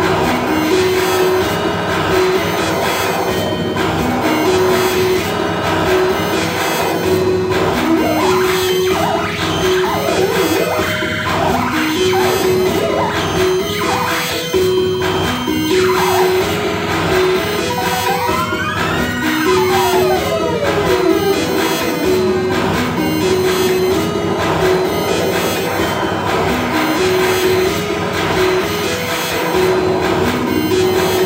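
Live electronic noise music played on a button controller through a small mixer and pedals: a pulsing tone stepping between two pitches loops under a dense, noisy texture. Pitch sweeps rise and fall over it partway through.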